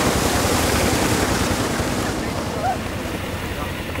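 Steady rushing and splashing of water through sandy slurry at a tin-mining pit, a little louder in the first two seconds.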